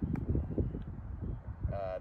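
Wind buffeting the microphone: an uneven low rumble that rises and falls, with one short click shortly after the start.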